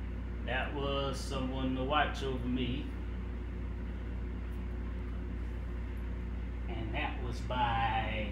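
A man's voice in two short stretches, one about half a second in and another near the end, with no clear words, over a steady low hum.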